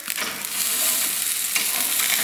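Thick porterhouse steak sizzling loudly as it sears on the hot grate of an Otto Wilde O.F.B. overhead broiler, just turned over with tongs onto its second side; a brief tap of the tongs comes right at the start.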